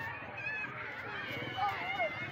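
A crowd of people talking and calling out over one another, with one voice louder near the end.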